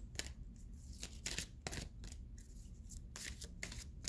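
Deck of oracle cards being shuffled by hand: a run of irregular crisp card snaps and rustles.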